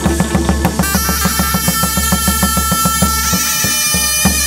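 Chầu văn ritual music: a fast, even beat of drum and clappers, joined about a second in by a held, high melody line.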